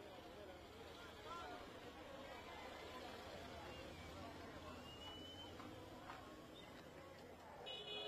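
Faint street ambience: distant crowd voices over a low steady hum of traffic, with a short high beep about five seconds in.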